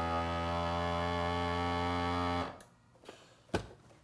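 Countertop vacuum sealer's pump running with a steady hum as it draws the air out of the bag, then cutting off suddenly about two and a half seconds in. A short click follows near the end.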